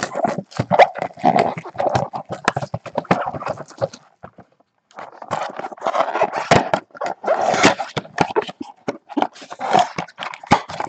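A cardboard trading card box being ripped open and handled by hand: rapid crackling, tearing and rustling of cardboard and wrapper, with a brief pause about four seconds in.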